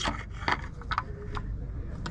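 A few light clicks and scrapes as a metal gearbox oil filter is pushed by hand into its housing against a freshly seated gasket.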